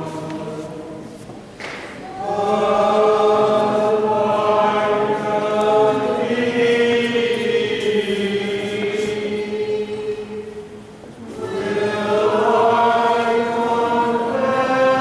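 Church choir chanting a liturgical hymn in long, held phrases. The singing drops off briefly about two seconds in and again near eleven seconds, then resumes.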